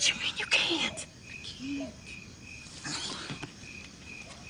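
Crickets chirping steadily, about two to three short high chirps a second, with a few soft voice sounds and brief noises mixed in.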